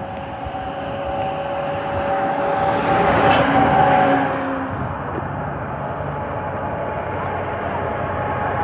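A flatbed tow truck passing close on a wet road, its engine and tyre noise building to a peak about four seconds in and then easing as more traffic follows. A faint steady two-note tone runs under the first half and fades about halfway.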